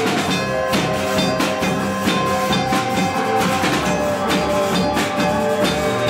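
Live band playing at full volume: busy drum kit and cymbals with electric bass guitar, under sustained, droning melodic tones that shift pitch now and then.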